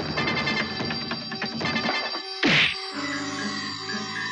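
Tense film background score with a fast, ringing, bell-like pulse. About halfway through comes a short, loud whoosh that falls in pitch, and the music then settles into sustained held notes.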